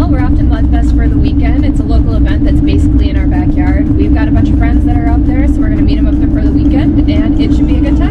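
Loud, steady cab noise of a pickup truck on the move: a deep engine and road rumble with a steady droning hum over it.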